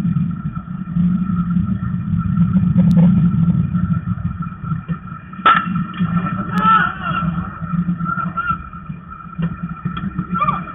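A baseball bat strikes the ball with a single sharp crack about halfway through, over a steady low rumble and hum on the field microphone. Brief shouts from players follow just after the hit.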